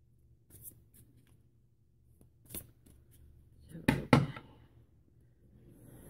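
A tarot deck being shuffled by hand: a few light card flicks and snaps, then two sharp knocks close together about four seconds in, the loudest sounds.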